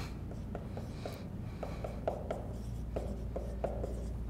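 Dry-erase marker writing on a whiteboard: a run of short strokes and taps.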